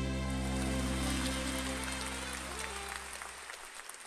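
A band's final chord held and fading out over about three and a half seconds, with audience applause rising beneath it and carrying on once the music has died away.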